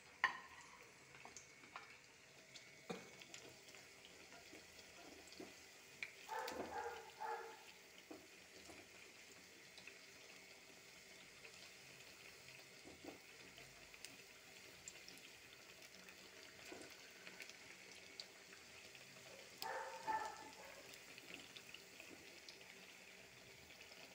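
Faint sizzling of batter frying in hot oil in a steel pan, with scattered light clicks and scrapes of a slotted spoon against the pan.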